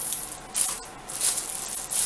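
Clear plastic wrapping crinkling in irregular bursts as it is handled and pulled off a small box.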